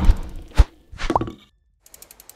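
TV station logo sting made of sound effects: a swelling whoosh that lands in a low thump, a second sharp thump about half a second later, then a short swoosh with a brief upward glide, and a few faint ticks near the end.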